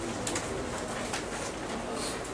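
Faint cooing bird calls in the background, with a few short high scratchy sounds over a steady hiss.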